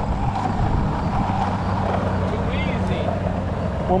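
Longboard wheels rolling on asphalt, a steady rolling hum.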